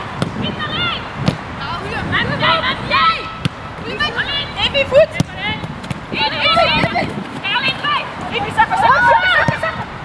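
High-pitched women's voices shouting and calling out in short bursts across the pitch during open play, with a few sharp thuds of the football being kicked.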